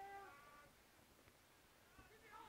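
Distant shouting voices from players or spectators: one drawn-out shouted call that ends about half a second in, then faint open-air background.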